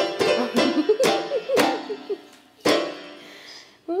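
Toddler banging clusters of keys on an electronic keyboard: several hard, random chords, the last about three seconds in, each left to ring and fade.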